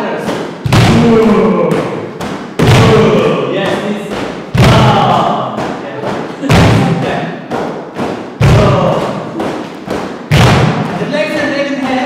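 A deep thump about every two seconds, each followed by several voices gliding in pitch and fading away.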